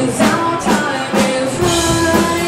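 Rock band playing live: a woman singing lead over electric guitar and a drum kit, with drum hits about twice a second and a long held note near the end.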